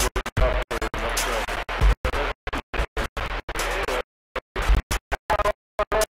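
Garbled voices coming over a CB radio, cutting in and out every fraction of a second with short dead gaps, so that no words come through.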